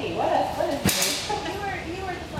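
A woman laughing, her voice rising and falling without words. A single sharp crack comes about a second in.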